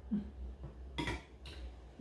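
Metal ladle knocking against the side of a stainless steel pot, two sharp clinks about a second in.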